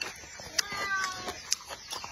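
Close-miked chewing of shell-on cooked shrimp, with wet mouth clicks and smacks at irregular intervals. About half a second in, a short, high, falling call sounds in the background and lasts under a second.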